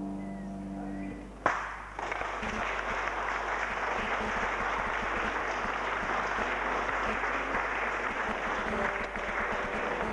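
The last held note of the violin piece dies away, then a single sharp knock, and about two seconds in an audience breaks into steady applause.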